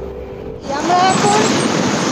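Background music until a cut about half a second in, then loud wind rushing over the microphone of a camera on a moving motorcycle, with a voice faintly through it.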